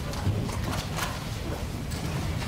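Footsteps on a hard floor with a few scattered knocks and the handling of papers near a table microphone, over a steady low room rumble.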